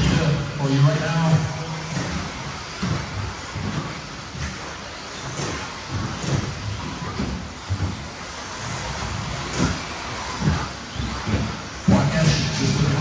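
Radio-controlled 2WD electric buggies racing on a turf track: a continuous mix of motor and tyre noise with frequent short knocks and clatters as the cars land jumps and bump the track edges. A voice is heard in the first second or so.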